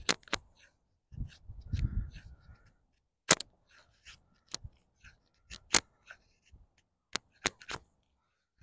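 A thick D2 steel tanto fixed-blade knife shaving feather-stick curls off a split piece of wood, heard as a series of sharp, irregular clicks and snaps as the blade strokes through the wood. A soft low rumble about a second in is wind on the microphone.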